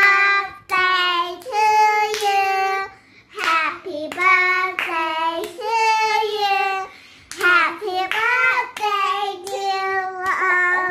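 Several high, child-like voices singing a birthday song in held, phrased notes, with hand claps keeping time.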